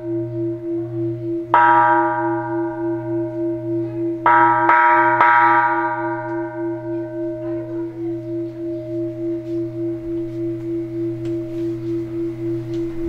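Large temple bell struck once about a second and a half in, then three times in quick succession around four to five seconds in. Its long ringing hum wavers in a steady slow pulse throughout.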